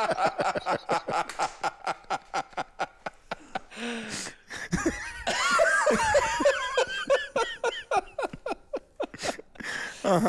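Several people laughing together: rapid bursts of laughter that die down, swell again about five seconds in, then trail off into a few chuckles near the end.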